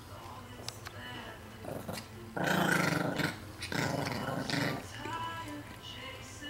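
Chihuahua growling while guarding a T-bone steak bone: two rough growls of about a second each around the middle, then a weaker one.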